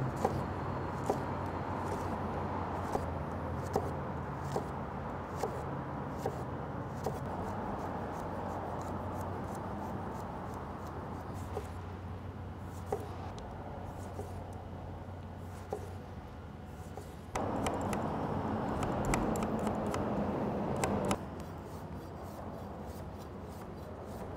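Chef's knife slicing jalapeño, lime and ginger on a wooden cutting board: a series of sharp knife taps on the board, about one every 0.7 s at first and sparser later, over a low steady hum. A louder stretch of noise lasts about four seconds past the middle.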